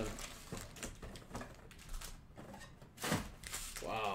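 Foil-wrapped Panini Prizm card packs being pulled from their box and stacked: light rustling and soft clicks, with one louder scrape about three seconds in.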